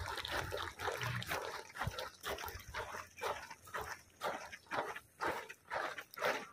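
Rhythmic footfalls of students marching in drill, settling into a steady beat of about two steps a second from about two seconds in.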